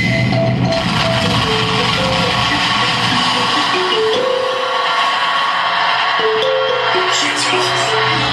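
Live noise music, loud and dense: a harsh wash of noise with a simple melody of held notes stepping up and down in the middle register.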